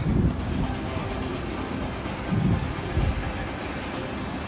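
Low, rumbling city street noise with a few louder surges: at the very start, and again about two and a half and three seconds in.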